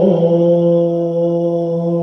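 A man's voice singing or chanting one long held note in a devotional prayer song. The note slides down a little at the start, then stays level and steady.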